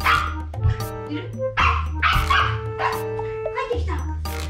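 A toy poodle barking, about six short barks spread across a few seconds, over background music.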